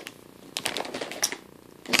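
Plastic packaging being handled, crinkling in a few short, scattered clicks and rustles.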